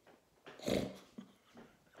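A man's brief stifled laugh, mostly breath through the nose, about half a second in, then a faint click.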